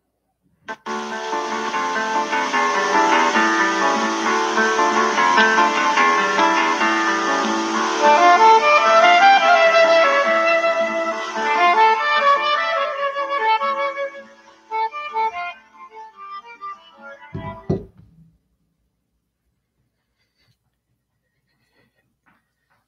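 A recording of Brazilian music for flute and guitar, played through a phone's speaker. It starts about a second in, thins to scattered quieter notes about two-thirds of the way through, and ends with a knock.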